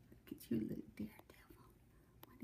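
A woman's soft, whispered murmuring, a couple of short sounds starting about half a second in, with small clicks mixed in.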